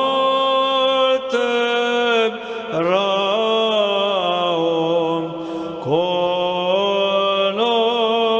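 Sung church chant: voices hold long notes that step up and down in pitch, phrase after phrase, with brief breaths between them.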